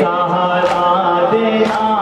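A male reciter chanting a noha, a Shia lament, into a microphone in long held notes, with men's voices joining behind him. Two sharp strikes about a second apart mark the rhythm, in step with matam chest-beating.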